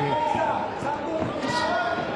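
Spanish-language TV boxing commentary over the arena's sound, with dull thuds from the ring.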